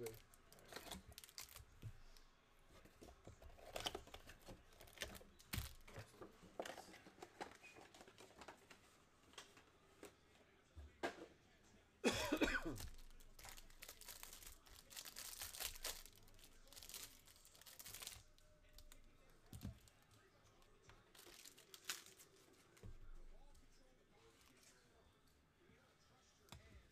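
Handling of a cardboard card box and a foil pack of 2023 Absolute Football cards: scattered rustles and taps, a cough about twelve seconds in, then the pack's wrapper crinkling and tearing open for several seconds.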